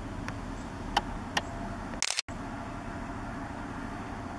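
Steady low rumble of distant city traffic, with a few light clicks in the first second and a half. About halfway, a brief bright hiss-like burst breaks off into a moment of dead silence before the rumble returns.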